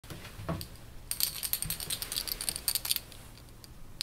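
A rapid run of small, high clicks and jingles, like small hard objects rattling, lasting about two seconds, after a soft knock near the start.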